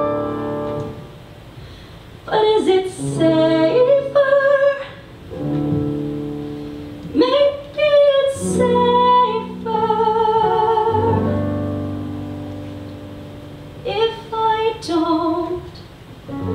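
A woman singing a slow musical-theatre ballad live with piano accompaniment, in three short phrases with vibrato on the held notes. Between the phrases, sustained piano chords fade away.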